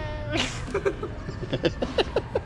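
A boy's high-pitched laughter: a drawn-out squeal that breaks into a breath about half a second in, then a run of short laughing bursts.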